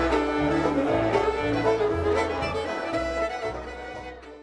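Live contra dance band playing a reel-style tune, fiddle melody over a steady stepping bass line. The music fades out over the last second.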